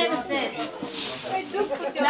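Several people talking in a room, with a brief hiss about a second in.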